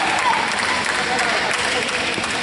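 Spectators clapping steadily, with voices mixed in, after a badminton rally ends.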